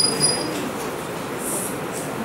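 Steady background noise of a classroom while students work in silence, with a short high-pitched squeak at the start and a brief high hiss about one and a half seconds in.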